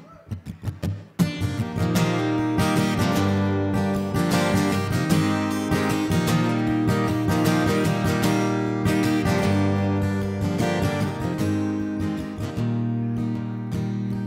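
Acoustic guitar opening a slow, sad song: a few single plucked notes, then steady strummed chords from about a second in.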